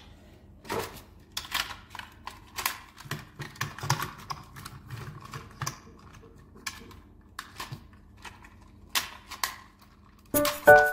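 Irregular run of small plastic clicks, taps and rustles, several a second, from hands handling toy train pieces and their packaging, with a few duller knocks around the middle.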